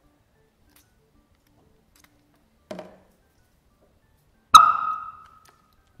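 Hydrogen–air mixture in a test tube lit with a burning splint: one sharp, loud squeaky pop about four and a half seconds in, ringing briefly on a high tone as it dies away. Its loudness is the sign of a fuel–air mix closer to the right proportions than in a quieter-popping tube. A fainter short sound comes about two seconds before it.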